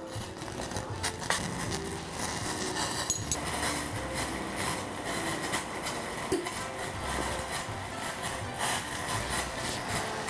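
Portable gas stove burning under a small stainless saucepan of water, with a steady hiss and small crackles that build from about two seconds in as the water heats and a block of palm sugar dissolves. Soft background music plays underneath.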